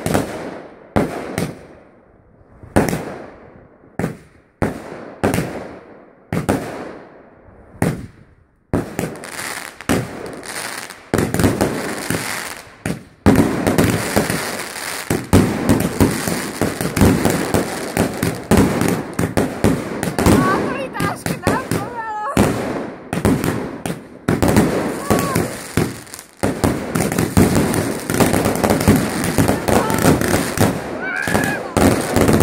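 Aerial fireworks going off. For the first several seconds there are separate bangs about once a second, each fading away. From about nine seconds in this turns into dense, rapid-fire banging and crackling, which gets louder a few seconds later.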